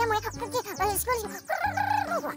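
A rooster crowing over a music track with a bass beat; the held crow comes in the last half second.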